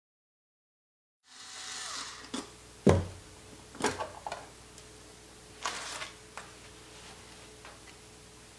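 Silence for about a second, then hands handling a black ABS plastic project box as its lid is lifted off: a brief rustle and a few knocks and taps, the loudest about three seconds in.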